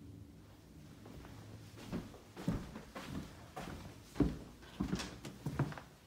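Footsteps walking through a house: a series of dull thuds, about two a second, starting about two seconds in.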